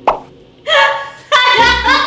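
Comedic editing music and sound effects: a short plucked plop right at the start, then bright swooping tones from about half a second in.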